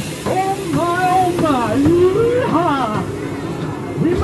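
High-pitched voices calling out without clear words, their pitch swooping up and down.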